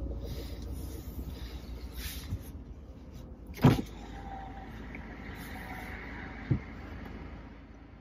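Car engine idling, heard from inside the cabin as a steady low hum. There is a short sharp knock about three and a half seconds in and a lighter one near six and a half seconds.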